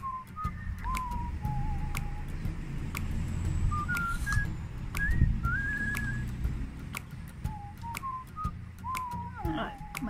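A whistled tune of single notes that step and slide up and down, some held for about a second, over a low steady hum. Crisp clicks and crunches from apple slices being bitten and chewed run through it.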